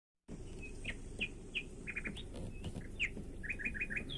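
Forest birds chirping: short high whistled notes at irregular intervals, with a quick run of four similar notes near the end, over a steady low rumble.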